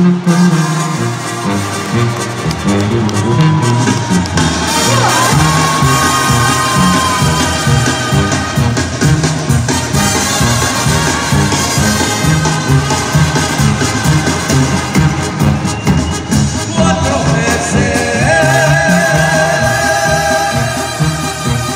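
Latin music with a steady bass beat playing over the arena sound system, with sliding melodic notes a few seconds in and held, wavering notes entering near the end.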